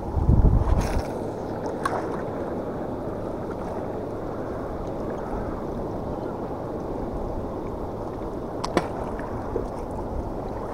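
Steady wash of water and wind along a rocky shore. In the first second there is a loud low rumble on the microphone as a spinning rod is cast, and a few short sharp clicks follow, the sharpest near the end.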